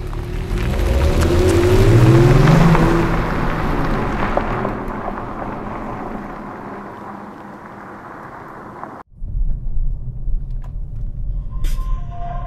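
Kia Stinger GT1's 3.3-litre twin-turbo V6 accelerating, its pitch rising for about two seconds, then fading away. The sound cuts off abruptly about nine seconds in.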